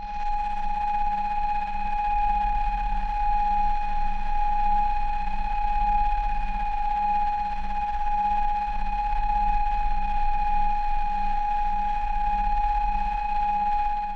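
Old-television sound effect: a steady, high, unwavering test tone over electrical hum and hiss, with a faint low throb repeating a bit under twice a second.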